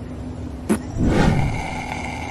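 Sucking through a paper straw at the bottom of a drained paper cup, drawing air with the last of the drink: a noisy, whistling slurp that starts about a second in, just after a short click, and tails off at the end.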